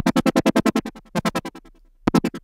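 Ableton Drift software synthesizer playing a detuned saw-wave sound whose filter is swept by a fast sine LFO, chopping the note into a rapid, even pulsing of about ten beats a second. The note dies away about a second and a half in.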